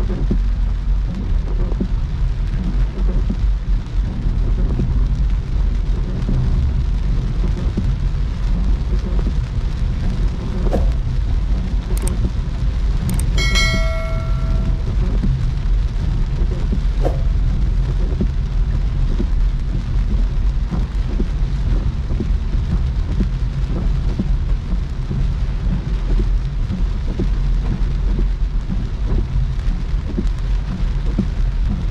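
Heavy rain drumming on a moving car's windshield and roof, a dense steady patter over a deep rumble of tyres on the wet road. A short bright chime sounds about halfway through, just after a couple of clicks.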